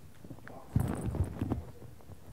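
A short cluster of dull knocks and bumps lasting under a second, near the middle.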